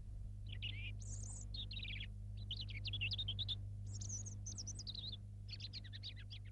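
Small birds chirping in quick runs of high twittering notes, over a steady low hum.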